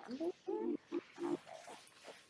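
A person's voice making a handful of short, pitched vocal sounds that rise and fall, with no clear words, fading out near the end.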